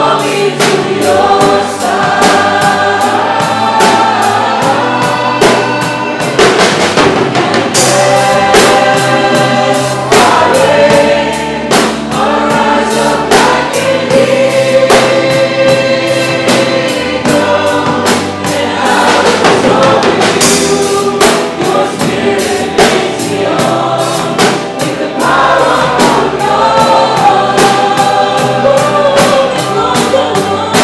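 Live worship band playing a song, with voices singing the melody over a drum kit keeping a steady beat.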